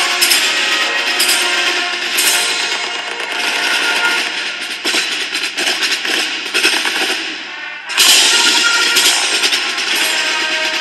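Marching show band playing brass and drums, with quick, repeated drum strokes. The sound drops back briefly and then surges loud again at about eight seconds in.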